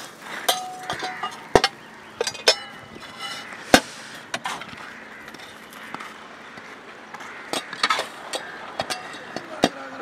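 A string of sharp metal clinks and knocks, some ringing briefly, as a steel poking rod strikes the metal lids and rims of a brick kiln's fuel-feed holes, with a lull in the middle.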